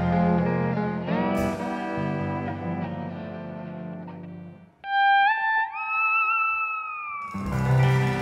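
Live Western swing band playing an instrumental passage, with pedal steel guitar and fiddle. About halfway through the band drops out and a single held note slides up twice, then sags slowly. The full band comes back in near the end.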